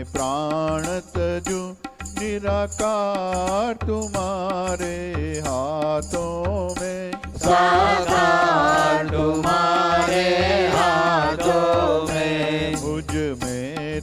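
Devotional Hindu bhajan: a voice singing a sustained, ornamented melody over a steady drone and a regular low beat, growing louder and higher from about eight to twelve seconds in.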